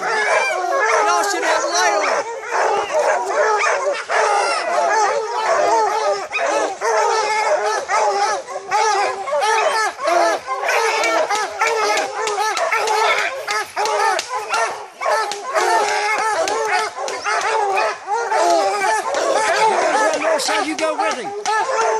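A pack of bear hounds baying and barking without let-up, many dogs' voices overlapping.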